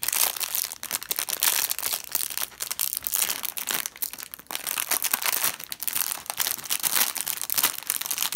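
Clear plastic polybag of Lego pieces crinkling and crackling as hands work it open. The crackle is dense and irregular, with brief pauses.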